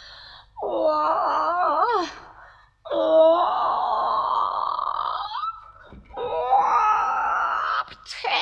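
A woman's theatrical wailing: three long, drawn-out cries, each wavering in pitch, the middle one the longest.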